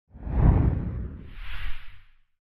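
Whoosh sound effect for an animated title: a deep whoosh that swells up and peaks about half a second in, then a second, higher whoosh with a bright shimmer near the end, fading away.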